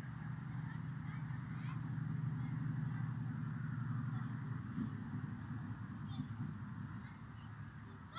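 A few faint bird chirps, short rising-and-falling calls, over a low steady rumble.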